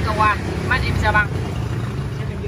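Honda Wave 100's single-cylinder four-stroke engine idling steadily, fitted with a Takegawa CDI and ignition coil.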